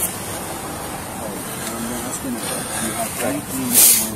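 Faint voices of people talking in the background over a steady noise bed, with a short burst of hiss near the end.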